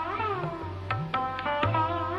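Sarod playing sliding notes that bend up and down between sharp plucked strokes, over tabla. The bayan's deep bass strokes rise in pitch.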